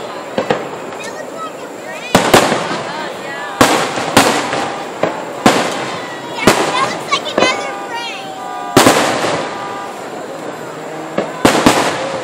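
Aerial firework shells bursting in the sky: about a dozen sharp bangs at uneven intervals, some in quick pairs, each trailing off in a rumble and crackle.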